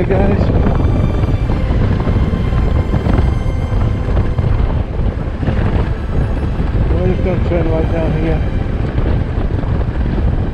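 A 250cc motor scooter riding over cobblestones: a steady low rumble from the engine and tyres, with wind on the microphone. A brief muffled voice comes in about three-quarters of the way through.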